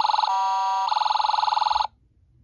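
Toy State Road Rippers toy fire truck's electronic siren sounding from its small built-in speaker: a fast warble, a steady tone for about half a second, then the warble again until it cuts off near the end.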